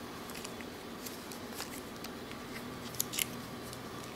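Faint handling of a plastic smartwatch and its band: light scattered clicks, with two sharper clicks about three seconds in.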